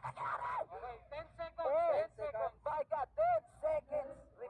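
A person's voice, high-pitched, in short rising-and-falling bursts without clear words.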